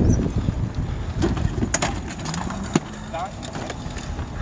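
Wind buffeting the microphone on a moving e-bike, loud at first and easing off as the bike slows, with a few sharp clicks and rattles.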